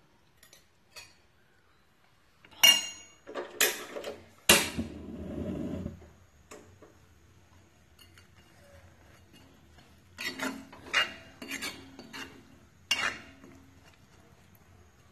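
A spoon clinking and scraping against a black iron kadai while stirring thick fish pickle, in two bursts: a few sharp strikes and a scrape about two to six seconds in, then another cluster from about ten to thirteen seconds.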